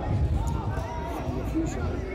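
Footballers calling out to each other on the pitch during play, heard at a distance, over a low rumble with a few dull thuds.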